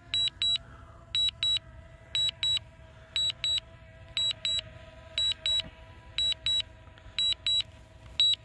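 Controller alert sounding short, high double beeps about once a second, the alarm that the drone is on return-to-home. Under the beeps, a faint steady hum from the original DJI Mavic Air's propellers overhead.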